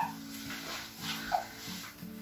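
Handheld whiteboard eraser wiping marker off a whiteboard: faint rubbing strokes with a short squeak about a second and a half in.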